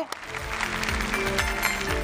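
Studio audience applauding, with entrance music playing under the clapping: sustained notes over a low beat.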